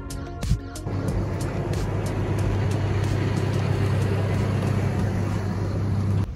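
Background music for about the first second, then a large military truck's engine running with a steady low drone, the music's beat still faintly under it.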